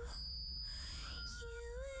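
A song with a singer holding long, drawn-out notes over a steady low drone. A thin high tone sounds for the first half second, and a new sung note comes in about halfway through on the word "you", sliding slightly upward.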